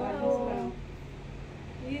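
Women's voices exchanging greetings. One long, drawn-out voiced phrase fades out in the first second, then speech picks up again near the end.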